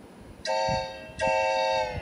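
Two toots of a steam locomotive whistle sound effect, a short one and then a longer one, each a chord of several pitches, the second sagging in pitch as it ends.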